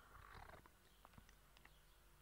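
Near silence: faint room tone with a few small clicks.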